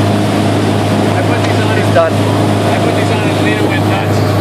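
Ski boat's engine running steadily at towing speed, a constant low drone under the hiss of the churning wake and wind.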